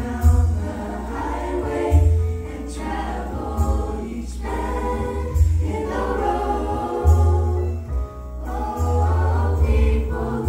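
Mixed a cappella vocal group singing sustained close harmony into microphones, with no instruments. A deep bass part comes in strongly about every one and a half to two seconds under the held chords.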